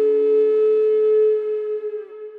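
Native American flute holding one long, steady note that fades near the end, leaving a softer lingering echo of the tone.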